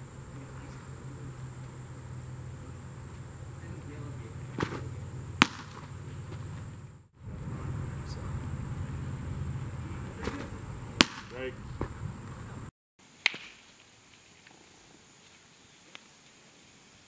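Baseball smacking into a catcher's mitt: two sharp pops several seconds apart, each with fainter knocks around it, over a steady high-pitched insect drone.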